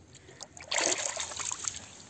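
Shallow water splashing and swishing for about a second as a released fish leaves the angler's hand and swims off.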